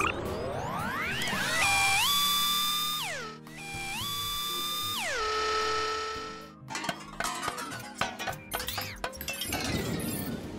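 Cartoon electronic sound effects: rising synth whoops, then two long electronic tones that step up in pitch, hold and slide back down. From about seven seconds in comes a quick run of metallic clicks and clanks of cartoon tool work.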